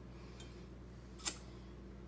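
Quiet room with a low steady hum, and one short click or crinkle about halfway through, a fainter one before it, as the paper seed packets on the counter are handled.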